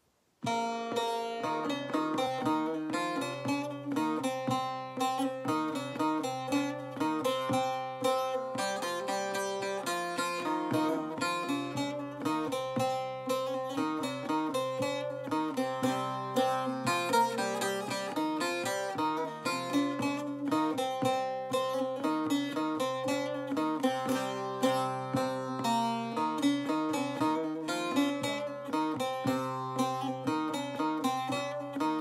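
Bağlama (Turkish long-necked saz) played solo, a fast-picked melody of many quick notes over a steady low drone, starting about half a second in.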